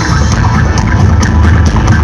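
Live rock band playing loud with electric guitars over a heavy, steady low end.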